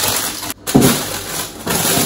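Plastic vegetable bags rustling and crinkling as food is rummaged out of a fridge, in a few loud bursts with a brief sudden gap about a quarter of the way in.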